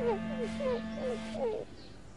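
Cartoon dog's voice: five short, falling whimpers in quick succession, over a held music chord that stops about three-quarters of the way in.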